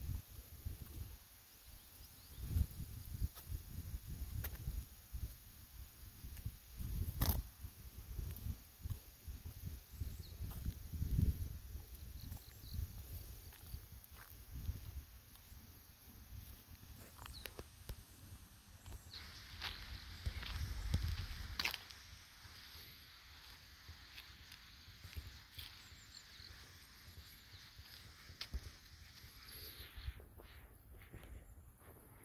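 Footsteps on a paved rural path, with an irregular low rumble and a few sharp clicks scattered through.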